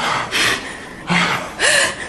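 A man gasping for breath: three loud, breathy rasping gasps in quick succession, one with a short voiced catch.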